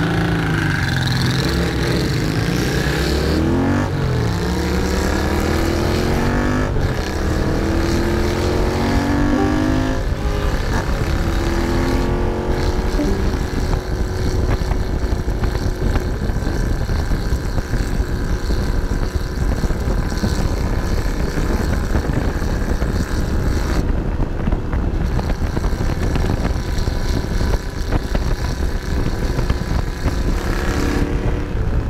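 Honda CX650 cafe racer's V-twin, fitted with Peashooter mufflers, accelerating away from a standstill. The revs rise in three pulls through the gears, with a drop at each upshift about every three seconds, then the engine settles into steady cruising.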